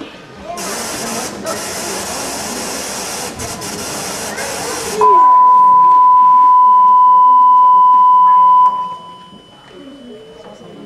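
Audience applause with voices, then a loud, steady video test tone, the standard 1 kHz reference beep that goes with colour bars, held for nearly four seconds before it cuts off.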